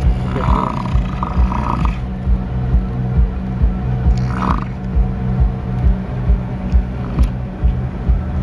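American bison bull bellowing, a deep guttural call heard twice: once from about half a second in, and briefly again about four seconds in. Under it runs background music with a steady beat.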